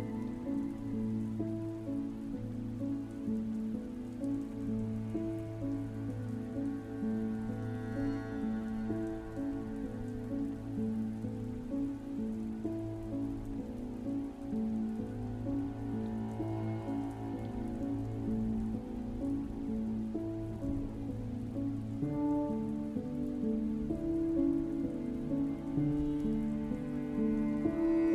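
Gentle relaxation music of piano and harp, held chords changing slowly, layered over a steady recording of rain.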